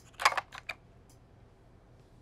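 A few short clicks and knocks in the first second, handling noise from an electric guitar being swapped for another, then only faint background.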